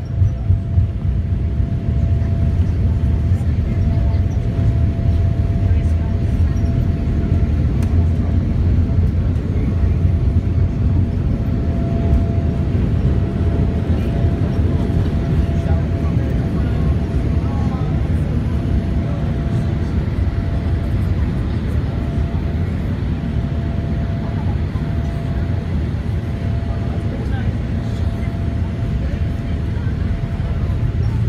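Boeing 787 jet engines at takeoff power heard inside the passenger cabin during the takeoff roll and liftoff: a steady low rumble with a faint steady whine, easing slightly near the end once airborne.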